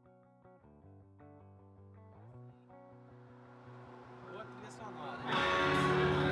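Rock music: quiet picked guitar notes build in a swell, then the full band comes in loudly about five seconds in, with a voice.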